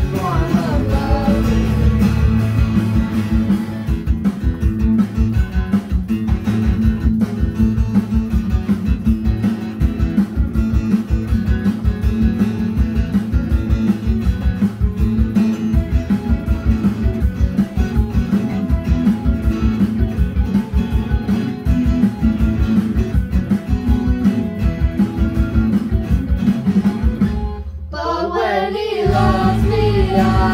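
Acoustic guitar strummed in a steady rhythm through an instrumental stretch of a song. Children's voices sing at the start and come back in near the end, just after a brief break in the strumming.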